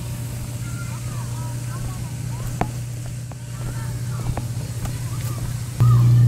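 Footsteps knocking lightly on a wooden boardwalk, about one a second, over a steady low hum that gets louder near the end. Faint bird chirps come in now and then.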